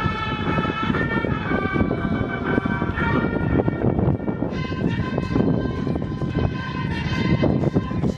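Marching music of held, horn-like notes that step in pitch every second or two, over heavy low rumbling noise from wind on the microphone.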